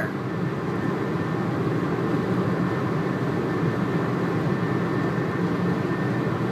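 Steady car noise heard from inside the cabin, an even rumble and hiss with no changes.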